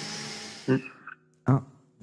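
A deep breath taken close to the microphone, a breathy hiss that fades away over about a second, followed by the first word of a slow spoken count.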